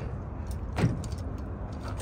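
A bunch of keys jangling lightly in the hand, a few small clicks, over a steady low rumble.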